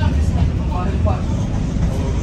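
Tyne and Wear Metrocar 4073 heard from inside the car while it runs along the line: a steady low rumble of wheels on rail and running gear. Quieter voices come over it during the first second or so.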